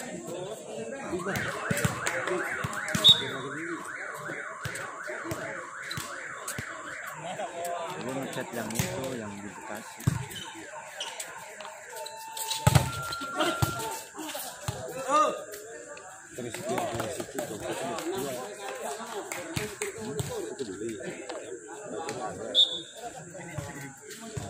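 Volleyball rally with sharp ball strikes and players' and spectators' voices. For about six seconds near the start, a fast repeating rising electronic tone like an alarm, about four sweeps a second, runs under it.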